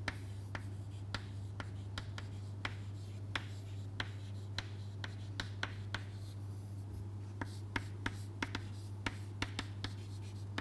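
Chalk writing on a chalkboard: a quick series of short taps and scratches as the letters are formed, about two a second.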